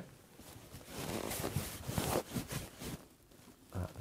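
Soft, irregular rustling of shirt fabric as a hand presses and slides onto the collar at the collarbone, with small crackly scrapes.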